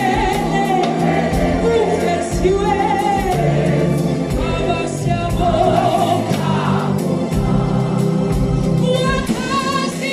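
Large mixed-voice gospel choir singing in harmony, amplified through a sound system.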